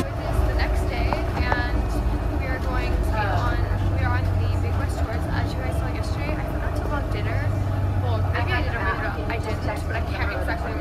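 Bus engine running with a steady low rumble, heard from inside the passenger deck, under voices talking.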